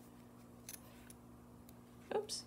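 Near silence with a few faint, short ticks and rustles of a needle and thread being worked through a leather backing by hand.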